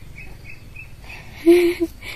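Faint high chirps repeating several times a second in the background, and a brief, louder voiced sound about one and a half seconds in.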